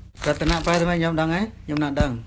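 Buddhist devotional chanting: a voice holding long, steady, sung-out notes in a recitation, after a brief noisy rustle at the start.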